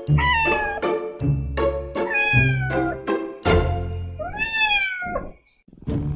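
Three drawn-out cat meows, the first two falling in pitch and the last rising then falling, over music with a steady beat. The music drops out briefly near the end.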